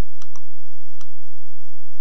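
Computer mouse button clicking while an on-screen text box is moved into place: three short clicks, two in quick succession just after the start and a third about a second in.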